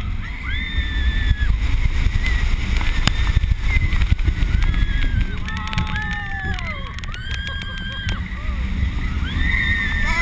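Wind buffeting the microphone over the low rumble of a wing coaster train running at speed. Riders scream again and again in long, held cries that rise and fall.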